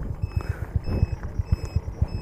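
Small motorcycle engine idling at a standstill, a rapid even low throb of about a dozen beats a second, with light rustling from a bag being opened.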